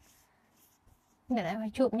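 A woman speaking Khmer, resuming after a short pause of near silence; her voice comes in about two-thirds of the way through.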